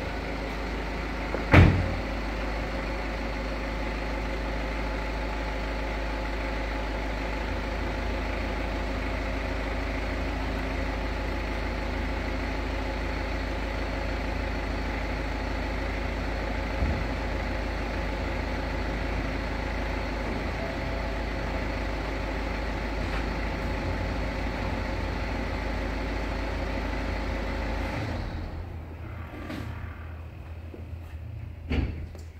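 BMW 4 Series Convertible's electric folding hard top opening: its roof mechanism runs with a steady hum for nearly half a minute and stops shortly before the end, as the roof finishes stowing. A sharp click comes about a second and a half in.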